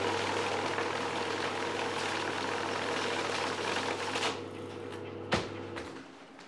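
Electric banknote counting machine running, riffling a stack of paper notes through with a steady motor hum. The riffling stops about four seconds in, leaving a fainter hum, and a single sharp click follows near the end.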